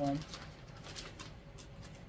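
A woman's voice drawing out the end of a word, then faint rustling and soft handling noises of baby clothes being held up and moved.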